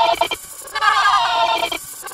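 Heavily effects-processed, warbling cartoon-voice audio, its pitch wobbling like a bleat. It comes in two bursts with short gaps, the second and longer one about a second in.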